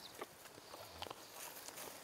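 Quiet outdoor background with a few faint, scattered clicks from food and utensils being handled at a worktable.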